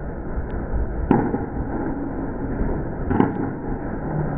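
Candlepin bowling: the ball rolls down a wooden lane over the steady low rumble of the alley, with a sharp knock about a second in. About three seconds in comes a short clatter as the candlepins are struck.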